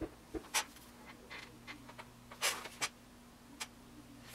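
Sculpting tool scratching and scraping on modeling clay in short, irregular strokes, the longest about two and a half seconds in.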